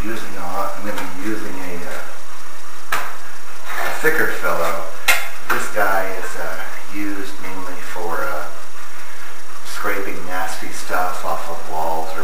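A thin sheet-metal tool clicking and scraping against aquarium glass and its frame as it is worked in to pry the glass from the plywood. Sharp clicks come about three to five seconds in, under a man's indistinct voice.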